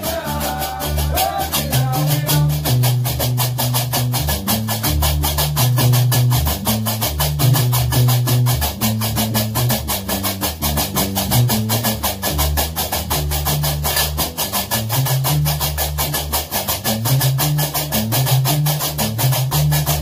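Gnawa music: a guembri, the three-stringed bass lute, plucks a repeating low bass line under a fast, steady clatter of qraqeb, iron castanets. A singing voice fades out about two seconds in, leaving the instruments alone.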